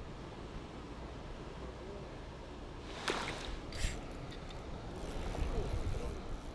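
Steady rush of water pouring from a small concrete outlet into a river. About three seconds in come a couple of brief sharper sounds.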